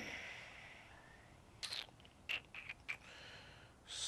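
A few faint, short taps and scrapes of a dry-erase marker being handled at a whiteboard, after a soft hiss near the start.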